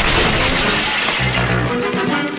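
A crash of something breaking, its noise dying away over about the first second, over background music.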